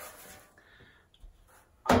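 Quiet handling of a boiler's removed combustion cover panel as it is lowered and set down, with a soft low knock about a second in and a sharp click near the end.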